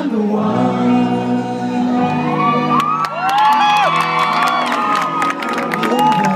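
A live rock band holds a chord while the crowd cheers and screams, with many high voices rising and falling from about two seconds in and scattered clapping in the second half.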